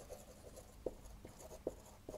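Dry-wipe marker writing on a whiteboard: a few faint, short pen strokes.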